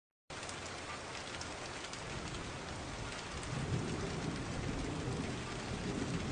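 Steady rain hiss that starts suddenly just after the start, with a low thunder rumble building from about halfway through.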